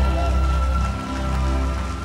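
Church keyboard playing sustained chords with long held low bass notes, under a light patter of congregation clapping.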